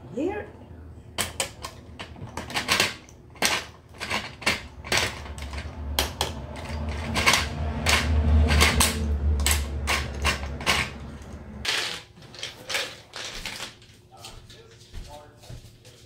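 A plastic toy gumball machine being handled: a long run of sharp clicks and knocks. A low rumble runs through the middle while the dispensing knob is turned and the gumballs shift.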